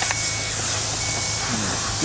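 A high electronic beep sounding twice, each about half a second long and a second apart, over a steady hiss and low hum.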